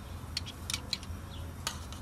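A metal spoon clicks a few times against a stainless saucepan as mustard is spooned into a sauce, over a low steady hum.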